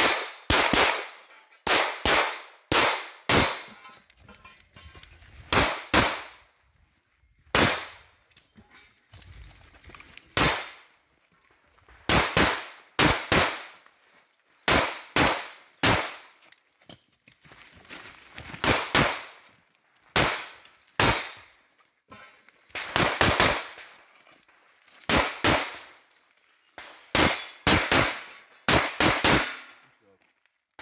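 Pistol shots fired in a practical shooting stage. They come mostly in quick pairs a fraction of a second apart, with pauses of one to two seconds between groups as the shooter moves between targets.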